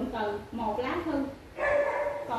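A woman speaking in short phrases.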